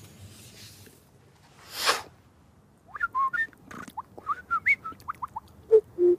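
A man imitating birdsong with his voice: a quick string of short whistled chirps, each gliding up or down in pitch, starting about three seconds in. A short breathy hiss comes just before, about two seconds in.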